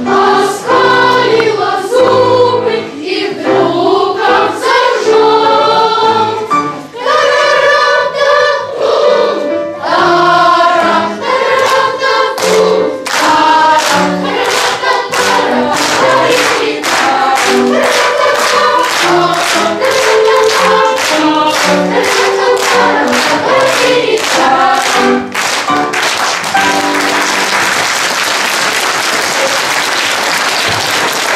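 Boys' choir singing a lively song, with a steady beat of claps about twice a second through its second half. Near the end the singing stops and applause takes over.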